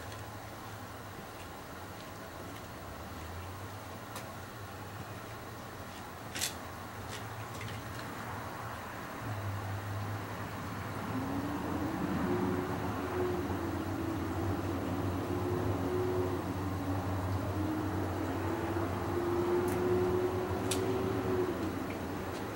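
A motor droning steadily, growing louder about nine seconds in, with a steadier pitched drone joining about eleven seconds in; a single sharp click about six seconds in.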